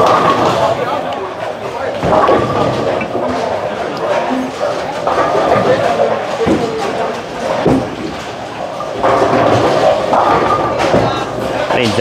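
Busy bowling alley: a steady din of background chatter, broken by a few sharp knocks and thuds of balls and pins on the lanes.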